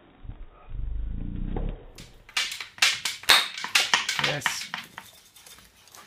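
A pump drill working, with a rapid, uneven run of sharp clicks and knocks as the crossbar is pumped and the flywheel spins the spindle. The clicks are densest in the middle, and a low rumble comes before them.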